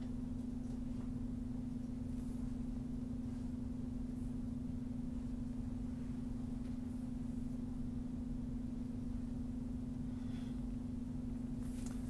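A steady low electrical hum on the recording, one unchanging tone over a faint background hiss, with a few faint clicks.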